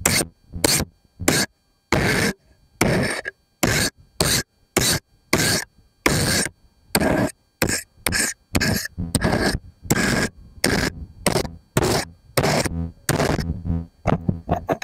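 Scissors snipping and scraping close to the microphone in a rapid series of short, sharp bursts, about two a second, each cut off abruptly.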